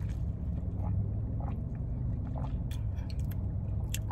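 A person drinking an iced agua de jamaica (hibiscus drink with pineapple): faint sips and swallows with small scattered clicks, over a steady low rumble in the car cabin.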